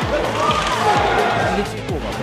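Background music under hockey highlights, with faint arena sound.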